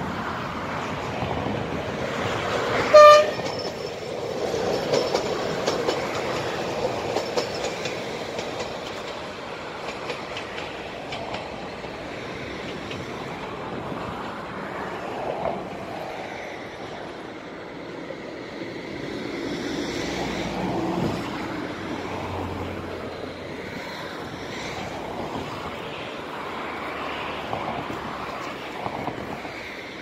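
A short, sharp train horn blast about three seconds in, then the steady rumble of a regional railcar running on the tracks.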